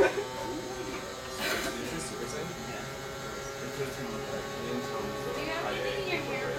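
Van de Graaff generator running: a steady electric buzz from its motor and belt.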